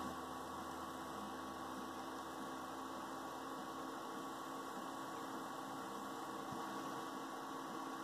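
Low steady hum with a few faint steady tones and no events, from a desktop PC running under a full 16-thread CPU rendering load.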